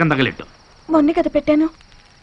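Film dialogue: a man's voice trails off, and after a short pause a higher voice speaks a brief phrase. Under it runs a faint, steady, high cricket trill in the background ambience.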